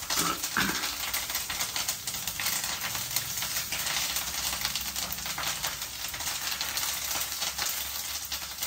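Fresh fenugreek leaves frying in a hot-oil tempering in a nonstick pan, stirred with a silicone spatula: a steady sizzle thick with fine crackles.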